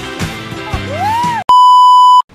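A pop musical song with a gliding sung voice, cut off about one and a half seconds in by a loud, steady electronic beep like a TV test tone, the sound of a glitch transition.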